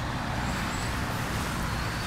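Steady road traffic noise from cars going past, a continuous wash with a low rumble.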